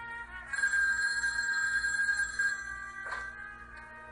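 A telephone rings in one long ring of about two seconds, starting half a second in, with film-score music beneath. A brief clatter follows about three seconds in.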